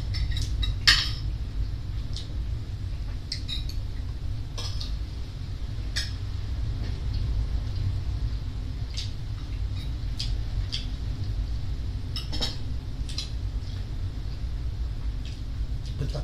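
Spoons and forks clicking against ceramic plates now and then while eating, a dozen or so irregularly spaced clinks over a steady low hum.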